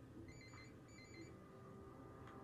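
Mobile phone ringing faintly: two short trilled rings of a high electronic tone, each about a third of a second long.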